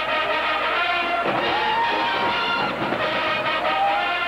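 College marching band brass playing loudly, with a long held note that slides up about a second in and another rising note near the end.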